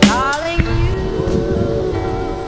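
Background music with held, sustained tones and a gliding note right at the start.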